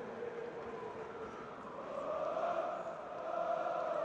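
Faint chanting voices holding long notes, the pitch rising a little about halfway through.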